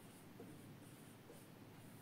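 Faint strokes of a marker pen on a whiteboard as a word is written by hand.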